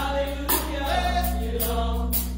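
Gospel praise team singing together, with a long-held low note underneath and light percussive hits about every half second.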